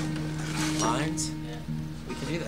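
Acoustic guitar strings ringing on with steady held notes between songs at a live acoustic set, with a short voice heard about a second in.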